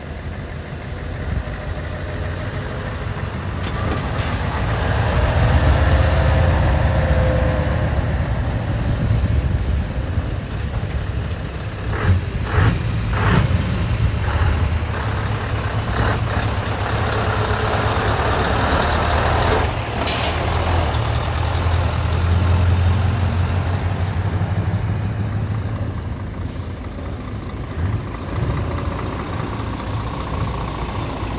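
Scania trucks driving past one after another, their diesel engines running deep and loud, swelling as each truck nears, loudest about six seconds in and again a little past twenty seconds. Short sharp air sounds come about twelve to fourteen seconds in, and a sharp air-brake hiss at about twenty seconds.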